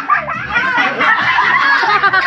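Several people laughing and squealing at once, over a steady low beat about twice a second.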